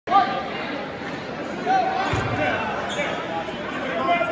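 Gym crowd voices and chatter, with a basketball bouncing once on the hardwood floor about two seconds in.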